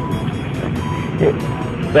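Steady background noise with a faint high steady tone, and a brief faint murmur a little past halfway.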